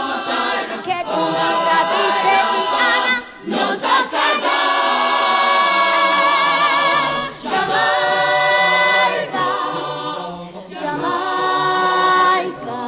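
Children's choir singing unaccompanied in long held chords, the longest one, about four to seven seconds in, carried with vibrato.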